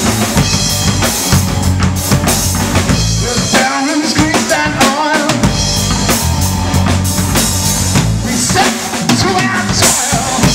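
Live rock band playing an instrumental passage on a Ludwig drum kit, electric bass guitar and electric guitar, the kick and snare prominent. Between about three and a half and five and a half seconds in, the bass and kick drop out in short breaks, leaving wavering guitar notes, then the full band comes back in.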